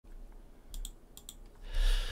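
Computer mouse clicks: two quick double-clicks about half a second apart, followed near the end by a soft rushing noise.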